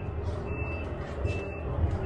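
Short high electronic beeps repeating about every 0.8 s, two full beeps, over a low steady rumble.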